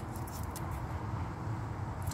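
Faint crinkles and clicks from a plastic-packaged Scentsy wax bar being handled, over a steady low background rumble.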